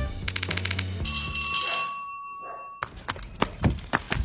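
An electronic doorbell rings a steady high chime for almost two seconds, then cuts off abruptly. Quick irregular taps and clicks follow.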